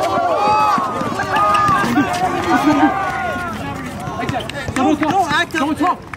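Several men shouting over one another on a basketball court.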